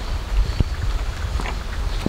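A child's bicycle with training wheels rolling slowly over wet concrete, with a few light knocks over a steady low rumble.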